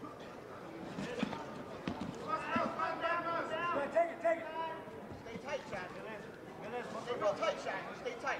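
Onlookers' voices calling out from around the mat, the words unclear, with a few dull knocks in the first two seconds.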